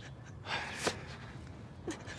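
A young woman crying, her breath catching in a few short gasping inhales.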